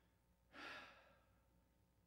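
A man's single audible breath, a short sigh-like puff about half a second in, over otherwise near-silent room tone.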